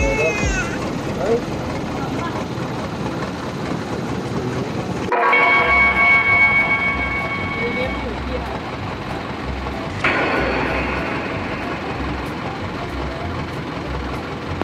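A tour boat's motor running steadily as it cruises along the river, with water and wind noise. After an abrupt cut about five seconds in, a steady high whine joins it for about three seconds.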